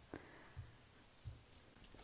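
Faint taps and short scratching strokes on a tablet's glass screen, about four in all.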